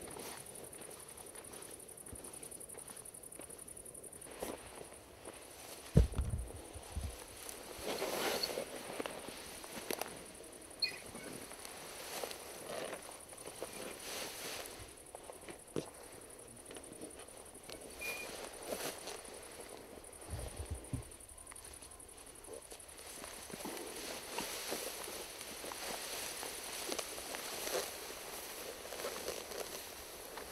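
Footsteps and rustling through long grass as a shot roebuck is lifted and dragged, the carcass brushing through the stems. There is a sharp knock about six seconds in, and a softer bump later.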